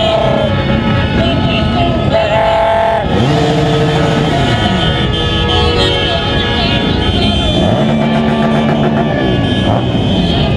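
Motorcycle engines revving, their pitch rising and falling several times, over the noise of a crowd with horns blowing.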